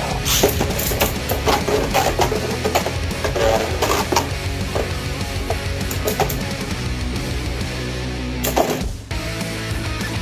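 Rock background music with Beyblade Burst spinning tops whirring and clashing in a clear plastic stadium, heard as many sharp clicks of collision that are thickest in the first half. One louder hit comes near the end.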